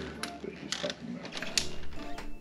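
A few sharp, irregular clicks and knocks.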